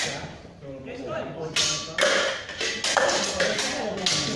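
Practice swords and a buckler clashing in sword-and-buckler sparring: a quick run of sharp knocks and clacks in the second half, with voices in the background.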